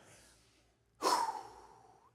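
A man's long audible sigh, breathing out about a second in and fading away over roughly a second; the first second is nearly silent.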